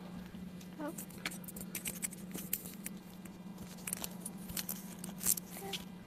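Rustling and scattered clicks of a clip-on lapel microphone being handled and attached to clothing, over a steady low electrical hum.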